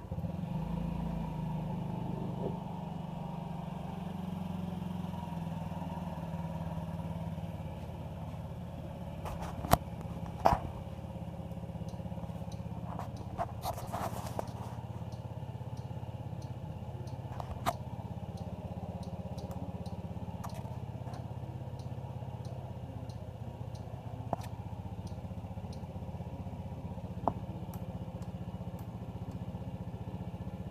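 2009 Honda Ruckus scooter's 49 cc four-stroke single-cylinder engine starting and then idling steadily. A few sharp clicks sound over it, the loudest about ten seconds in.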